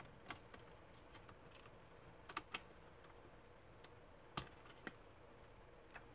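A few small, sharp plastic clicks and taps, about five, two of them close together midway, as a plastic spudger and fingers work the display cable connector loose on a laptop motherboard, over near-silent room tone.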